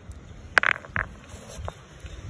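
Sharp clicks of stone on stone as the ammonite nodule is handled: two crisp clicks about half a second apart, the first the loudest, then a softer knock.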